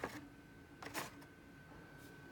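Two light clicks of a Hot Wheels blister-pack card being handled and set down, one at the start and one about a second in, over a faint steady high tone.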